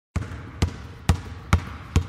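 A basketball being dribbled at an even pace, five bounces a little over two a second, each a heavy thud with a short ring.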